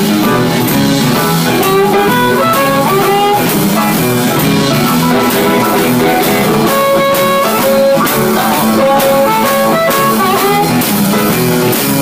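Live blues band playing a solo passage: guitar with drum kit keeping the beat, with many held and bending lead notes.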